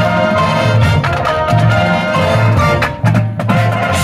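Marching show band playing live: the brass holds chords over a pulsing low bass line, with front-ensemble percussion. A cluster of sharp percussion hits comes about three seconds in.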